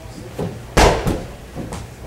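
A medicine ball thrown overhead hits the wall with one loud thud about a second in, followed by a softer knock as it comes back down.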